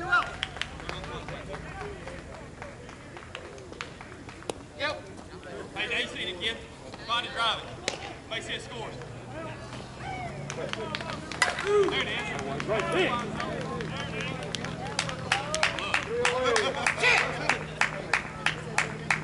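Players' voices shouting and calling across a slowpitch softball field, with a sharp crack a little past the middle. Quick, rhythmic clapping comes near the end.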